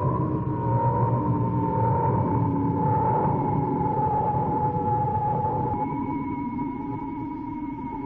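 Electronic music: a held tone that sinks slowly in pitch over a low drone, with a second, higher tone joining about six seconds in.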